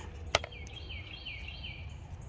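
A single sharp click as the plastic ring is handled, followed by a bird singing a quick run of repeated, falling chirps over a low steady hum.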